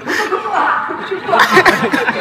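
Chuckling laughter mixed with wordless vocal sounds, with a burst of louder laughs about one and a half seconds in.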